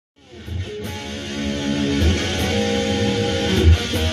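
Telecaster-style electric guitar playing a lead phrase of picked notes, each held and ringing before the next is picked.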